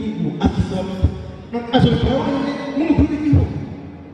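A man's wordless vocalising through a handheld stage microphone, in short phrases that rise and fall in pitch, punctuated by deep thumps. The sound trails off near the end.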